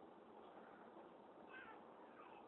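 Near silence, with a faint, short, high-pitched whine about one and a half seconds in.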